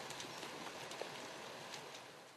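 Water gushing out of a fish-stocking pipe and splashing: a steady hiss of running water with a few faint ticks, slowly fading toward the end.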